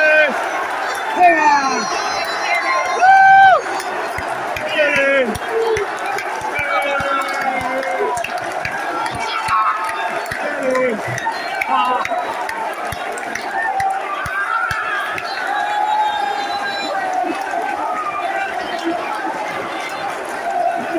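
Football crowd: men close by shouting and yelling in celebration over the steady noise of a packed stand, with the loudest shouts in the first few seconds and the close yells thinning out about halfway through.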